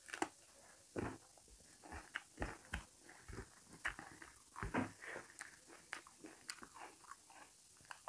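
A person chewing and biting food close to the microphone, with irregular short crunches and mouth clicks. A bite into a raw green chilli comes right at the start.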